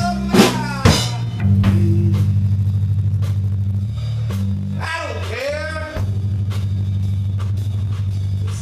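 A punk band playing a song live in a room: a drum kit with a few sharp hits about half a second and a second in, under guitar and bass holding long low notes. A short wavering high note comes in about five seconds in.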